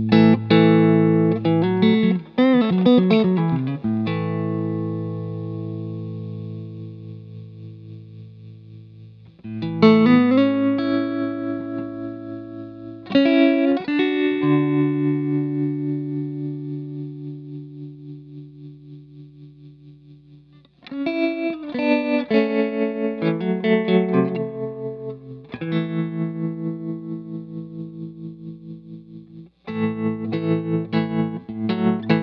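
Electric guitar chords played through a Mattoverse Inflection Point modulation pedal. Each chord is struck and left to ring and fade, its volume pulsing steadily up and down with the tremolo. A few seconds in, a quick flurry of notes wavers in pitch.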